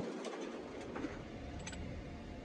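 Steady low hum and rumble of a vehicle cabin, with no speech.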